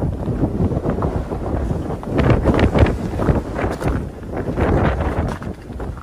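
Wind buffeting the microphone in irregular gusts, a loud, rumbling rush.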